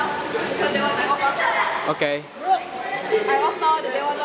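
Overlapping chatter of several people talking at once in a large hall with echoing walls.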